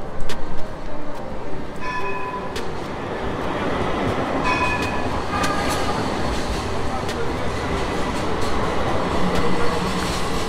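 A modern street tram running past close by on its rails, its steady motor and wheel noise building from about four seconds in.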